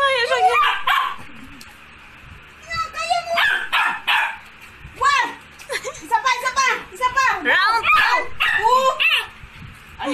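Puppy barking and yelping in several bursts of calls that rise and fall in pitch.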